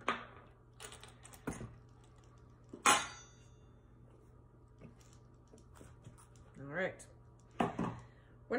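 Small rock tumbler barrel being opened by hand: its metal lid and inner seal click and knock against the barrel. The loudest is a sharp metallic clink about three seconds in, with a short ring.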